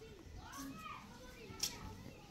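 Faint, high-pitched children's voices in the background, with one short sharp click about one and a half seconds in.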